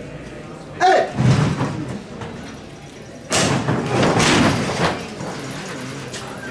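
A man's short shout about a second in. Then, a little past three seconds, a sudden loud thud runs into a noisy burst that lasts about a second and a half.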